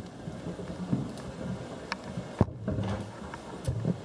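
Footsteps with small knocks and clicks as someone walks through a doorway, the sharpest click about two and a half seconds in, over a steady room hum.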